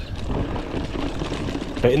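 Voodoo Bizango 29er hardtail mountain bike rolling fast over roots and dips on dry dirt: a steady tyre rumble with a run of quick knocks and rattles from the unsuspended bike.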